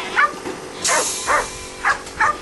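A dog giving short, high yips, four in quick succession, with a steady hiss coming in about a second in.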